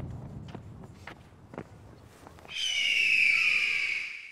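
Faint outdoor background noise with a few light clicks, then, about two and a half seconds in, the end-card sound effect of the club logo: a loud high-pitched sound, falling slightly in pitch, that lasts about two seconds and fades out.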